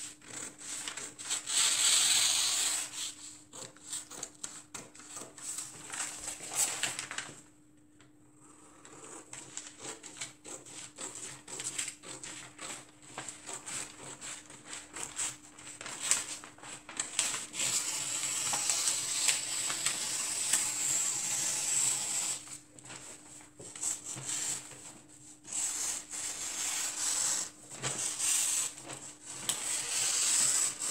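Pattern paper rustling and crunching as it is handled and cut with scissors, in irregular bursts, with a brief lull about eight seconds in.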